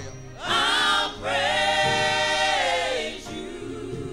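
Gospel choir singing: a short phrase, then one long held note that falls away about three seconds in.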